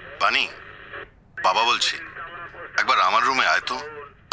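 Speech only: three short phrases of Bengali radio-drama dialogue.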